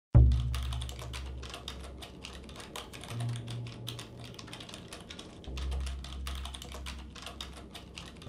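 Fast, irregular typing on a computer keyboard, a dense run of key clicks. Under it a deep low drone comes in suddenly at the very start and shifts pitch twice, at about three and five and a half seconds.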